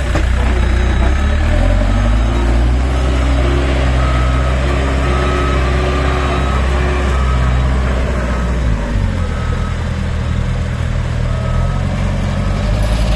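Case 580N backhoe loader's diesel engine running while its reversing alarm gives a short high beep about once a second as it backs up with a loaded front bucket. The engine note drops about three-quarters of the way through.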